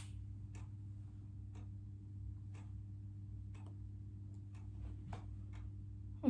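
A clock ticking about once a second, faintly, over a steady low hum.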